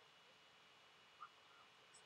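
Near silence: room tone in a pause of speech, with one faint, very short blip a little past the middle.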